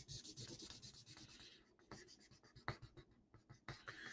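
Faint scratching of a pen or marker drawing on paper: a quick run of short strokes over the first second and a half, then only a few scattered strokes.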